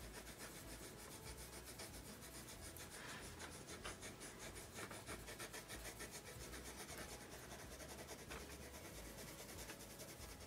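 Colored pencils shading on paper: a faint, steady scratchy rubbing made of many quick short strokes.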